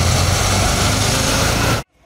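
KAMAZ dump truck's diesel engine running as the truck drives past close by: a loud, deep steady rumble with road noise. It cuts off suddenly near the end.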